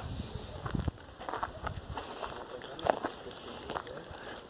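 Footsteps on dry dirt and grass, with irregular light knocks and rustles from the handheld camera.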